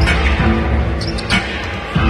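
Arena PA music with a steady bass line, over a few sharp irregular thuds of basketballs bouncing on the hardwood court during warm-ups.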